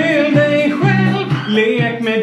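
A pop song with a voice singing a wordless, gliding vocal line over the backing music.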